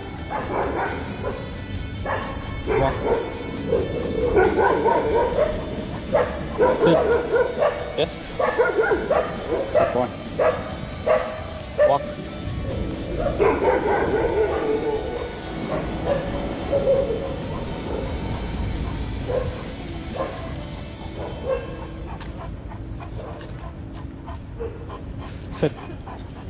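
A young German Shepherd whining and yipping in many short, irregular calls that bend up and down in pitch, with music playing faintly underneath.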